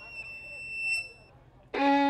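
Solo violin: a high note, just reached by an upward slide, is held and fades out a little past the first second. After a short pause a low bowed note starts loudly near the end.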